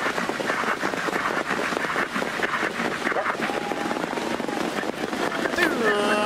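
Racetrack crowd cheering and shouting in a steady, crackling din as the harness race gets under way.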